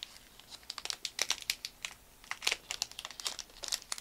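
Trading-card pack wrapper crinkling and crackling in the hands in a quick, irregular series of sharp crackles as it is worked at to tear it open; the wrapper is tough to open.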